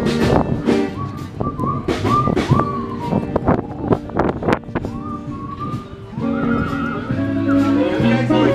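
Instrumental break of a pop-rock song with no singing: a high lead melody with sliding notes over bass and drums, dipping quieter in the middle before the full band comes back.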